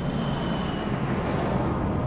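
Jet airliner passing overhead: a low rumble with a rushing noise that swells to a peak about a second and a half in.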